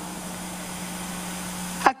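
Steady hiss with a low electrical hum from the microphone and sound system in a pause between spoken phrases. It cuts off abruptly near the end, just before speech resumes.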